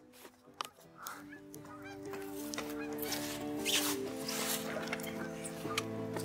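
A flock of geese honking as they fly over, the calls growing louder after the first second or so, with sustained background music notes underneath.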